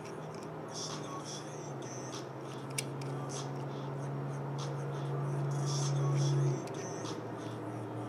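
Small scratchy ticks and scrapes of metal threads as the bottom cap and locking ring of a Caravela clone mechanical mod are turned in the fingers. Under them runs a low steady hum that cuts off suddenly about six and a half seconds in.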